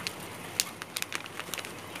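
Caged quail: a scatter of short, sharp ticks and chirps, most of them in the middle of the stretch.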